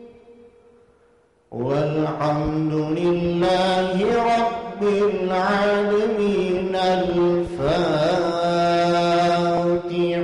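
A male muezzin recites the Quran in a melodic, ornamented style, holding long notes with slow turns of pitch. The opening second and a half is a near-silent pause for breath before the voice comes back in.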